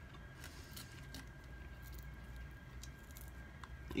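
Faint, soft sounds of a rotisserie chicken wing being pulled apart by hand, with a few light clicks in the first second or so.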